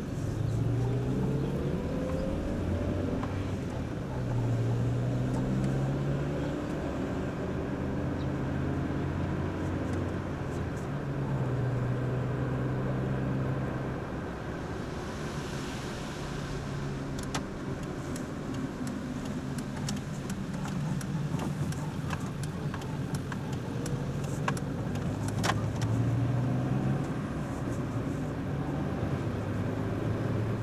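Car engine running as it drives along, its note climbing and dropping back several times as it accelerates and changes gear, heard from inside an open-top convertible with wind and road noise.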